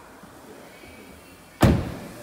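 A Volkswagen Golf's front door being shut: one loud, sudden thud about one and a half seconds in, after a faint steady background.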